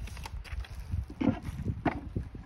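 Bubble wrap and a cardboard box rustling and crinkling, with scattered light knocks, as a wrapped game board is lifted out of the box.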